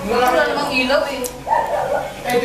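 People chatting among themselves, with a short sharp cry about one and a half seconds in.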